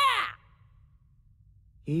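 A woman's shouted line ends just after the start, followed by about a second and a half of near silence, then a man's voice begins near the end.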